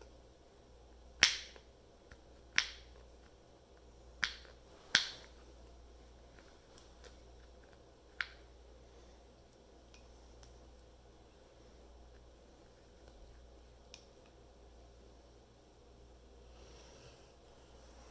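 Sharp, brief clicks from hands working a braided rawhide knot: four in the first five seconds and one more about eight seconds in, over faint handling rustle.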